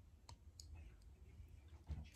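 Near silence in a small room, broken by a few faint, sharp clicks and a soft thump just before the end.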